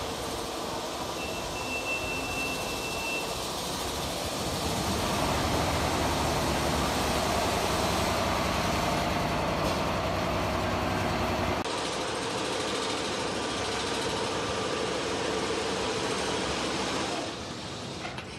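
Mammut VM7 single-needle lockstitch quilting machine running, a steady dense mechanical noise mixed with the hum of the mill floor. The sound thins out abruptly about two-thirds of the way through.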